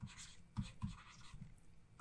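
Faint scratching and tapping of a stylus writing by hand on a tablet, in a string of short strokes.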